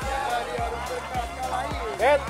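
Background music with a steady drum beat, just under two beats a second, under a melody.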